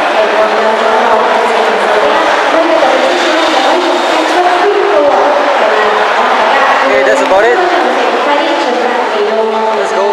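Steady babble of many overlapping voices in a crowded hall, with no single speaker standing out.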